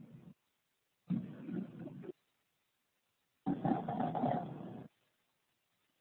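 Two short stretches of low, indistinct mumbled voice, about a second and a second and a half long, with the sound track cutting to dead silence between them.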